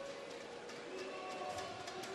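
Indoor pool-hall ambience of a water polo game: water splashing from swimming players and echoing background noise, with a few faint steady tones coming in about halfway through.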